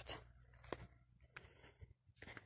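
Near silence: a faint low hum with a few soft clicks.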